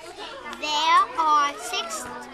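Speech: a young girl talking, with other children's voices behind.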